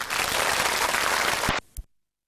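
Studio audience applauding, cut off abruptly about one and a half seconds in, followed by a short click and then dead silence.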